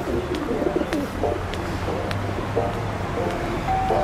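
Bird calls over a steady low hum, with a few sharp clicks scattered through.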